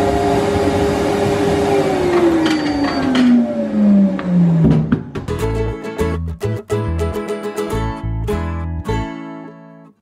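An ice cream vending machine's robotic arm whirring with a steady hum, its pitch sliding steadily down over a few seconds as it winds down. About five seconds in, music with plucked guitar takes over.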